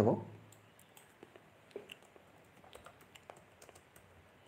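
A man's speech trails off at the very start, then about ten faint, sharp clicks come at uneven intervals, like keys or buttons being pressed.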